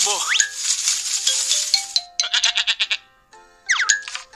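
A ram bleating, a pulsing call that sounds over soft background music with held notes.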